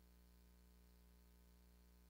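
Near silence: a faint, steady low hum with no other sound.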